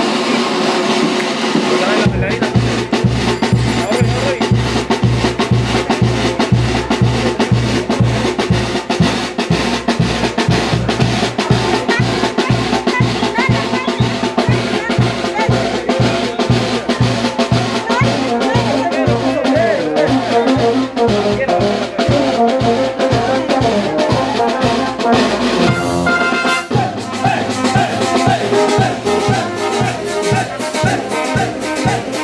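Street brass band playing a dance tune: trumpets, trombone, saxophone and tuba over a bass drum, snare and hand cymbals. The drum beat comes in about two seconds in and keeps a steady pulse, with a short break near the end.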